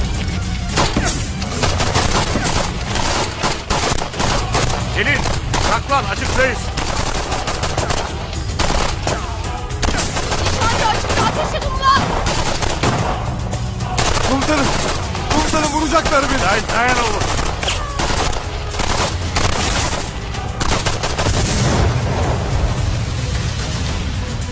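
A gun battle: rapid, repeated rifle and machine-gun shots in bursts, over dramatic background music.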